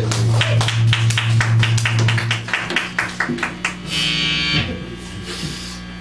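Live electric guitar and drum kit at the end of a song: a loud held low note sounds for about two and a half seconds under rapid, even drum hits, about seven a second. The drumming stops about a second later, leaving scattered small guitar and room sounds.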